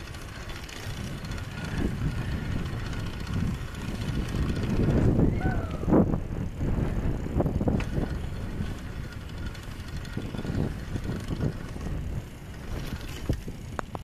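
Wind buffeting the microphone of a moving camera, with the rattle and clicks of a bicycle being ridden. A brief rising-and-falling call cuts through about five to six seconds in.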